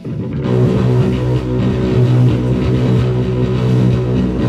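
Live rock band starting a song: the guitars and bass come in loud, with the full band, cymbals included, entering about half a second in and playing on steadily.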